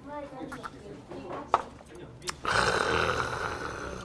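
A man's loud, raspy exhale lasting just over a second, the breath let out after downing a shot of soju, preceded by two sharp clicks.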